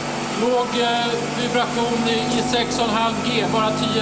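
A man talking over a steady mechanical hum with a few held tones from the vibration-test shaker rig.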